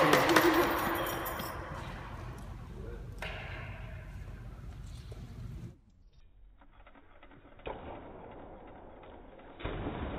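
Voices whooping and cheering, fading away over the first few seconds. After that it is much quieter, with a single knock near the eighth second. Near the end a bike rolls off the pool edge and splashes into the water.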